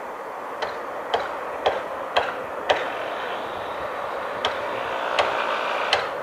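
Distant hammer blows on a building site: sharp separate knocks, about two a second for the first few seconds, then a few more spaced further apart. Underneath is a steady background noise that swells near the end.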